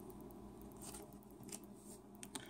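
Basketball trading cards being slid through a stack by hand: faint soft scrapes of card on card, two of them a little louder about a second in and near the end, over a low steady hum.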